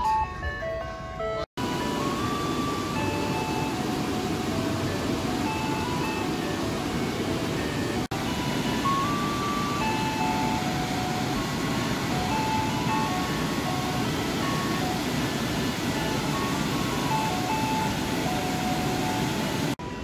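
Ice cream truck jingle: a tinkly melody of single steady notes, playing over the steady rush of water pouring over a low weir, which comes in after a brief break about a second and a half in.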